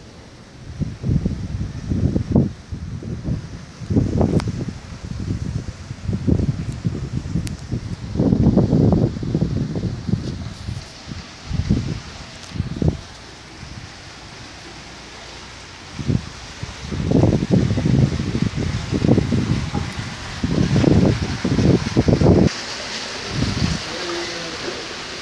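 Wind buffeting the camera microphone in irregular low rumbling gusts, with quieter lulls around 6, 10 and 13 to 16 seconds in.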